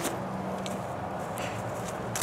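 Footsteps of someone running over grass, a short thud about every 0.7 s, over a low steady hum.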